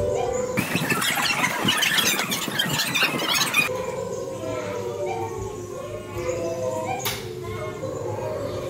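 Many feet stepping and shuffling on a wooden floor, a dense patter of steps lasting about three seconds, set between wavering pitched sounds before and after it.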